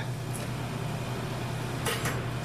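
Steady low hum of kitchen equipment, with a single short knock near the end as a rolled tortilla is set down on a plastic cutting board.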